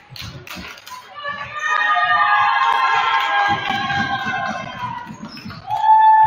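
A basketball being dribbled on a hardwood gym floor, repeated dull bounces. About a second and a half in, a loud wash of overlapping high-pitched tones comes over it for a few seconds. A single strong high tone sounds near the end.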